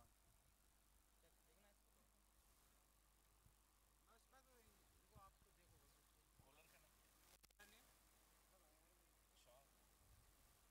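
Near silence: a steady low hum with faint, distant voices now and then.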